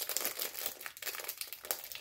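Plastic packaging crinkling as it is handled, with a quick run of irregular, crisp crackles.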